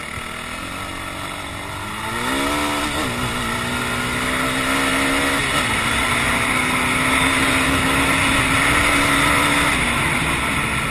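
ATV engine under throttle. Its pitch climbs about two seconds in, dips briefly about halfway, then holds steady at high revs and falls off near the end. A steady rushing hiss runs beneath it.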